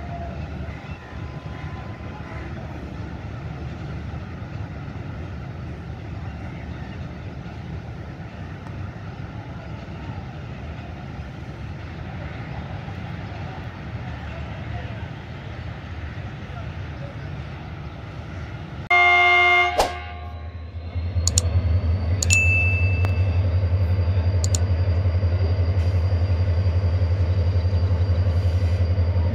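Diesel locomotive at a railway station: a steady low rumble from the yard, then a short, loud horn blast about 19 seconds in. After it comes the louder steady low hum of a diesel locomotive's engine running close by.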